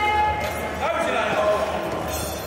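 Spectators yelling encouragement at a squatting powerlifter: two drawn-out, high-pitched shouts, the second a little lower and falling slightly, over the background noise of a hall.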